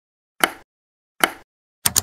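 Three short, sharp pop-like clicks, the last one doubled, each fading quickly, with dead silence between them: edited-in click sound effects.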